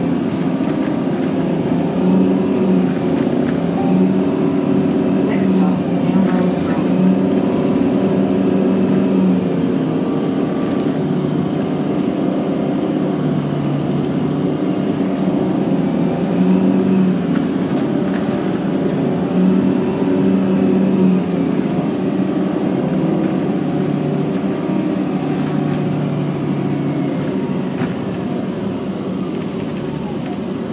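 Interior of a 2009 Orion VII NG Hybrid diesel-electric bus in motion: drivetrain and engine running with road noise and a whine that rises and falls as the bus speeds up and slows, easing off near the end as it slows for a stop.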